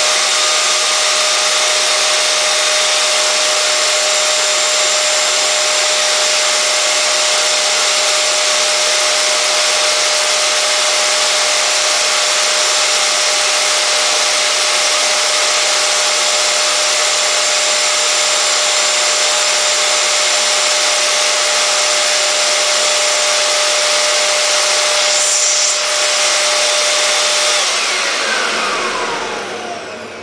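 Upright vacuum cleaner's motor, overvolted on 240 volts, running with a loud, steady whine. Near the end it loses power and spins down, its pitch falling away.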